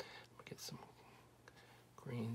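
Near silence, with faint whispered mumbling in the first second.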